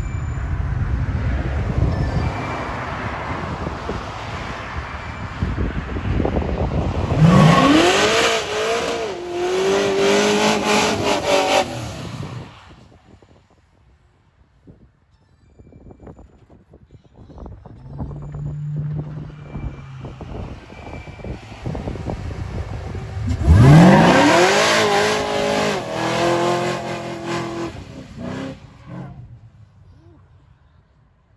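Supercharged Chevy short-bed pickup making two hard launches with burnouts: each time the engine revs up steeply and holds high while the rear tyres squeal, about five seconds each, with a quieter lull between them.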